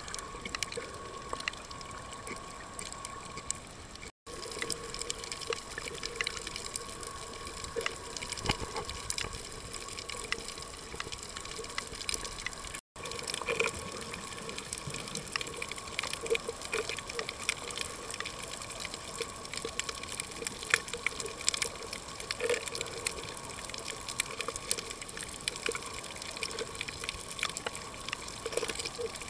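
Underwater sound picked up by a submerged camera: a steady watery rush full of fine crackling clicks, over a steady hum. The sound cuts out briefly twice.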